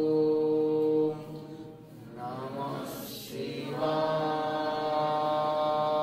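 A voice chanting a Shiva mantra in long held notes: one steady note, a break about a second in where the pitch slides, then another long held note from about four seconds in.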